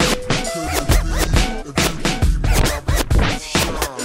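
Slowed-and-chopped hip-hop mix in an instrumental stretch without vocals: a steady drum beat with sustained notes and turntable scratching gliding up and down in pitch.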